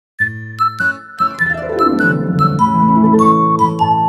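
Short logo jingle music: pitched notes struck one after another, a run of notes falling in pitch around the middle, then longer held notes.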